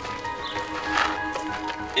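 Soft background music with long held notes and a few light clicks.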